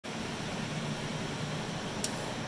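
Steady whirring hiss of cooling fans: the case fans of a row of desktop computers and a large ventilation fan running together.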